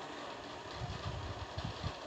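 Faint background hiss with a low rumble that swells for about a second in the middle.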